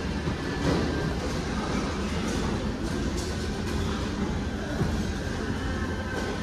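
Clothes rustling and being pushed around in a heap of used garments, over a steady low rumble of handling noise and store background.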